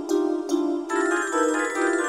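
MuseScore 3 notation-software playback of a chords-and-violin score: a steady pulse of short repeated notes, about three a second. About a second in, the texture thickens with fuller chords and bright, bell-like high tones.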